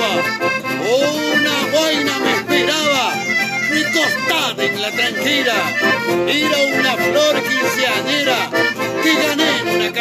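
Accordion and acoustic guitar playing a chamamé, with a man's voice gliding over them.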